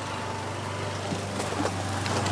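Steady low background hum with an even outdoor noise floor and no distinct event.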